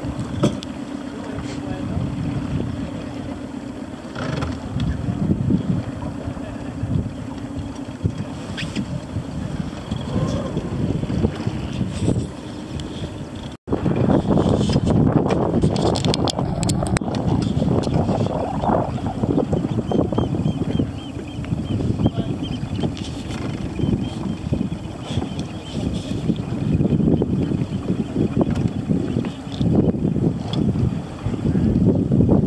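Wind rumbling on the microphone, with indistinct voices of people close by. A steady low hum runs under the first half, and the sound cuts out for a moment about fourteen seconds in.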